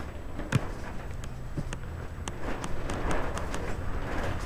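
Wind buffeting the microphone as a steady low rumble, with scattered light ticks and taps.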